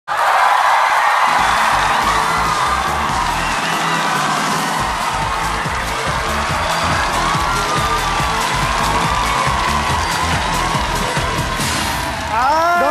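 Dance music with a steady beat playing as the studio audience cheers and shouts.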